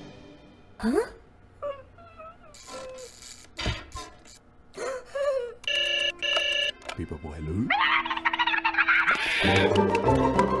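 Cartoon soundtrack: sparse sound effects with rising glides and short wordless character vocalizations, then two short ringing tones about six seconds in, and music starting near the end.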